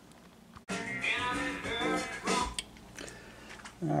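Music playing quietly in the background, starting abruptly about half a second in and fading away over the last second.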